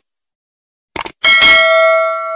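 Subscribe-button animation sound effect: silence, then a quick couple of mouse clicks about a second in, followed by a single bright bell ding that rings on and slowly fades.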